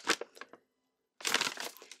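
A paper map being crumpled and crushed in the hands, in two sharp bursts of crinkling: a short one at the start and a longer one a little after a second in, with a dead-silent break between.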